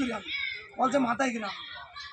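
A man speaking in Bengali, in short bursts with brief pauses.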